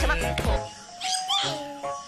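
Husky puppy giving short high-pitched cries, one at the start and another about a second in, over background music.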